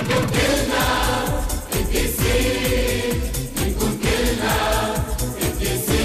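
A Christian hymn for children: voices singing over instrumental backing with a steady beat.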